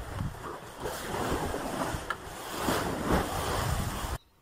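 Wind buffeting the microphone: a loud, rough rumble that gusts up and down, starting and stopping abruptly.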